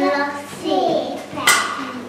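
A young child speaking, with one sharp clap about one and a half seconds in.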